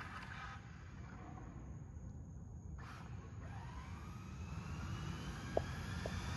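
Faint, steady background noise; over the last three seconds a faint whine from a distant motor rises slowly in pitch.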